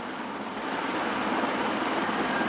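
Steady, even background hiss with no distinct events, a little louder from about half a second in.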